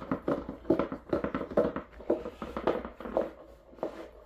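Thick black plastic base pan of a chicken feeder being fitted and twisted onto its hopper tube by hand: a quick run of plastic clicks, knocks and scrapes.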